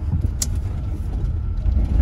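Snyder ST600-C's rear-mounted 600cc twin motorcycle engine running at low speed, heard from inside the cabin as a steady low rumble. A single sharp click comes about half a second in.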